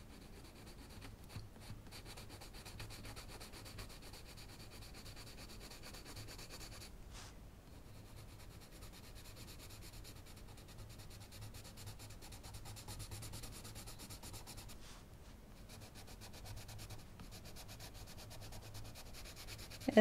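Coloured pencil lead rubbing over the paper of a colouring book in quick short strokes, a faint steady scratching as a light layer of colour is built up in the background.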